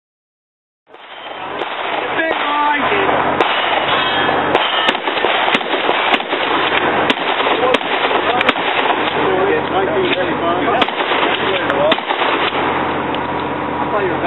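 A rapid string of shotgun shots fired at steel targets, starting about a second in and running at roughly one to two shots a second, over background chatter.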